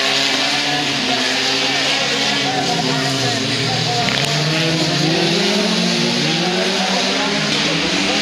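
Several autocross race cars racing on a dirt track. Their engines rev up and down through the gears, with more than one engine note overlapping as the cars pass.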